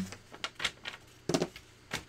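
A few light clicks and taps of hard plastic craft tools being handled, as a clear acrylic stamp block is set down on a wooden tabletop; the loudest pair of clicks comes a little past the middle.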